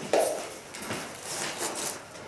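A short laugh, then faint rustling and a few light knocks and clinks of armour and gear as the fighters shift.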